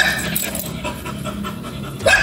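A dog panting steadily at close range.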